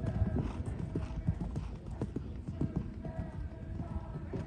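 Hoofbeats of a young show-jumping horse cantering on the sand arena surface, a run of dull, uneven thuds.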